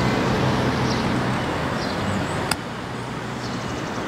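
Steady outdoor road-traffic noise with a low hum, and short high bird chirps every second or two. A sharp click about halfway, after which the traffic is a little quieter.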